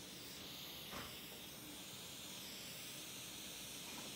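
Faint steady hiss of room tone, with one small click about a second in.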